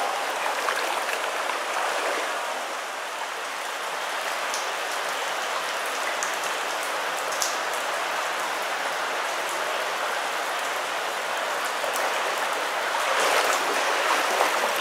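Water dripping and sprinkling down from the gorge's mossy rock walls onto a shallow creek, scattered drops ticking over the steady rush of the flowing stream. The rush grows louder near the end.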